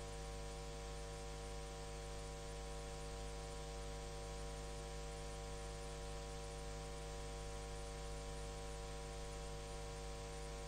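Faint, steady electrical mains hum with a light hiss beneath it.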